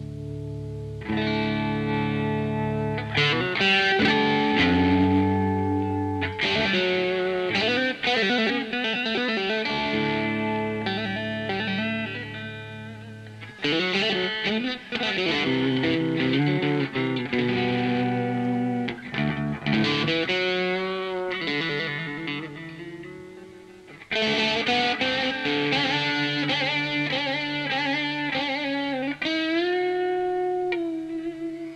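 Solo electric guitar played through effects: quick plucked melodic runs over low open strings left ringing as a drone, with the phrases falling away briefly twice before the next run starts.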